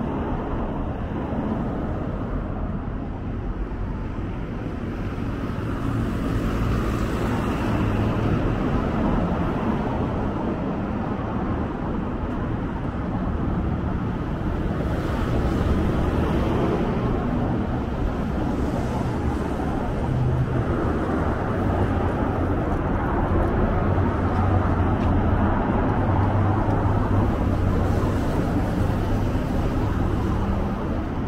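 Steady city street traffic: a continuous rumble of car and truck engines and tyres, a little louder after the first few seconds.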